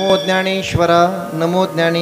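A man's voice chanting in a sung, drawn-out devotional style through a microphone and loudspeakers, with long held notes.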